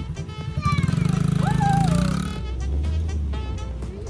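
Small youth dirt bike engine running and revving up for about two seconds, then dropping back to a low steady note, under background music.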